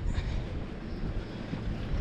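Quiet street ambience: a steady low rumble with a faint even hiss, with no distinct event standing out.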